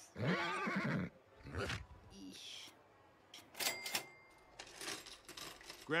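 A cartoon rabbit character's laugh, a giggle wavering in pitch, lasting about a second. It is followed by quieter clicks and clatter, with a brief high ring near the middle.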